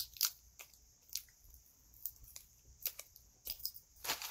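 Faint, scattered small sharp clicks and snips, about a dozen of them, as a silver flower charm is worked off its packaging.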